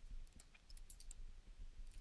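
Faint, scattered clicks and taps of a stylus on a tablet screen during handwriting.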